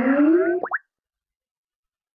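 Skype sign-in alert sound: a rising electronic tone that climbs steadily in pitch and ends in a quick upward sweep less than a second in.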